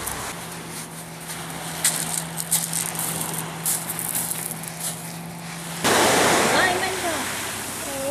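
Waves washing on a pebble beach, with people's voices over them. The sea is faint at first, under a low steady hum and scattered small clicks, then suddenly louder about six seconds in.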